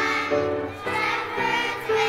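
Children's choir singing in unison, notes changing about twice a second.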